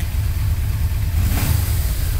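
Yamaha V-Max 1200's 1198 cc V4 engine idling, with a brief swell about one and a half seconds in. No rattle from the starter clutch, which has been replaced with a new one.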